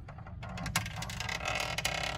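Hands handling a plastic 1/12-scale Batmobile model as its cockpit is worked open: a quick run of clicks and rustling starting about half a second in, over a steady low hum.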